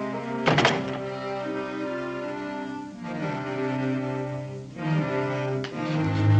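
Background music of sustained notes that shift in pitch. About half a second in comes one loud, heavy wooden thud, a plank door knocking shut, and a lighter knock follows near the end.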